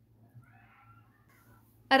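Near silence: quiet room tone with a faint, wavering sound in the background.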